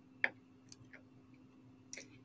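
A pause with quiet room tone and a steady low hum, broken by a short sharp click about a quarter second in and a few fainter ticks after it.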